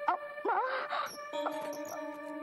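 A woman moaning in pain: a short wavering cry about half a second in. It sits over film background music of sustained held notes.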